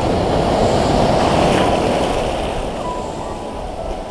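Sea surf breaking and foaming water washing through the shallows, loudest in the first two seconds and then easing off as the wave spreads out.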